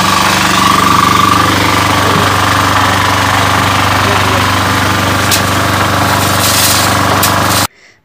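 A machine's motor running steadily and loudly, with people's voices over it. It cuts off suddenly near the end.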